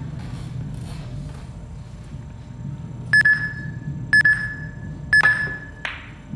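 Pool shot clock sounding its countdown warning: three identical high beeps, one a second, each about half a second long, meaning the player is almost out of time on his shot. Just after the last beep comes a single sharp click of the cue striking the cue ball.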